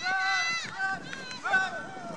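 People yelling in several short, high-pitched shouts, cheering on a play. The first shout is the longest and loudest.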